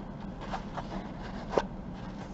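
Faint rustling and a few light clicks of fabric trim being handled and pressed onto a lampshade, over a steady low room hum.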